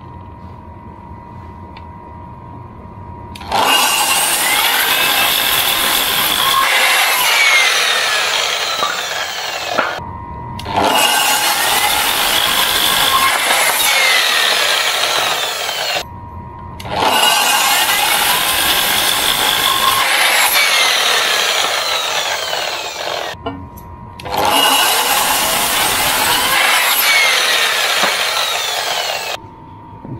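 Electric mitre saw (chop saw) running with a steady motor whine, making four long cuts through a pine board, each cut lasting about five to six seconds with short pauses between them.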